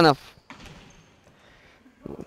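A futsal ball struck once about half a second in: a single thud that echoes briefly in the sports hall, followed by faint hall noise.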